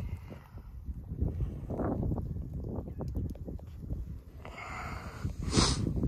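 Wind buffeting the microphone: an irregular low rumble, with a short breathy rush near the end.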